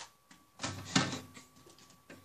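Plastic 7x7 puzzle cube knocking and clattering against other plastic puzzle cubes as it is set down on the pile: two quick knocks about half a second apart, the second louder.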